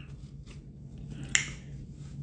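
Faint room tone with one sharp, short click a little past halfway.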